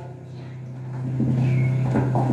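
A low, steady hum that grows louder about a second in.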